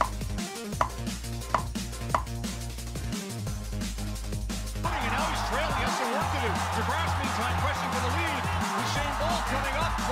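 Electronic dance track with a steady bass line, with a stadium crowd's cheering swelling about halfway through as the sprint race nears the finish. A few sharp clicks sound in the first two seconds.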